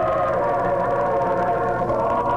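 Russian Orthodox church choir singing a cappella, holding long sustained chords at the close of a moleben.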